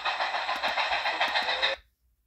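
Steam locomotive No. 6325's running sound played back through a laptop's small speakers: a steady rushing noise with a rapid flutter in loudness, thin with no bass, which cuts off suddenly a little before the end.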